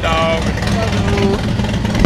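A vehicle engine idling steadily, with a high, drawn-out voice over it in the first second and a half.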